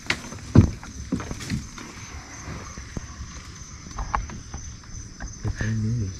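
Flat-bottom boat being poled through swamp water, with scattered knocks and water sounds; the loudest knock comes about half a second in. A steady high-pitched insect chorus runs underneath.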